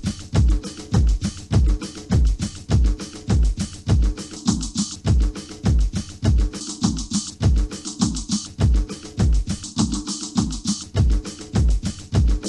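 Cosmic-style electronic dance music from a DJ mix tape: a steady kick drum about two beats a second under busy hand percussion and held synth tones.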